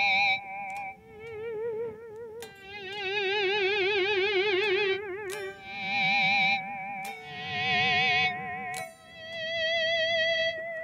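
Electric guitar playing high natural harmonics at the 15th, 14th and 12th frets through a Line 6 POD X3 Live with delay, boost and overdrive. Each note or two-note chord fades in with a volume swell and is shaken with the tremolo bar, so the pitch wavers. There are about six swelling notes in a row.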